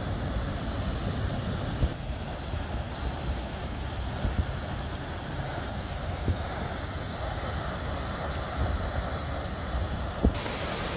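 Steady rushing of the Merlion fountain's water jet splashing down into the bay, with a few brief thumps.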